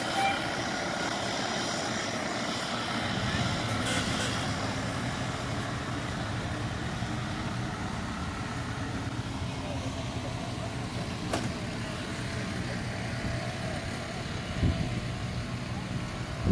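Fire engine's diesel engine running as the truck pulls away: a steady low rumble that grows about three to four seconds in, then slowly fades.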